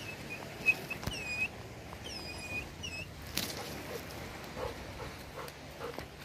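A bird calling: a few short high chirps, then three swooping whistled notes that dip and rise again, all within the first three seconds. A single sharp click follows a little later.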